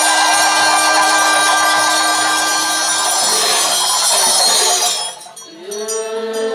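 Tibetan Buddhist ritual music in a temple hall: a loud, dense wash of ringing cymbals and bells over a steady low drone, which stops abruptly about five seconds in. A single held chanting tone starts just before the end.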